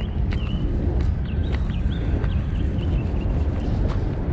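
Steady low rumble of wind buffeting the microphone, with a scattering of short, high, slightly falling chirps over it.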